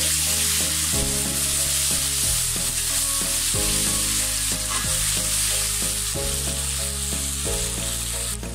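Sliced onions, green chillies and a spoonful of paste sizzling steadily in hot oil in a wok while a spatula stirs them.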